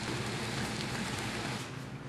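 Clam fritters frying in hot oil in a skillet: a steady sizzle that fades away near the end.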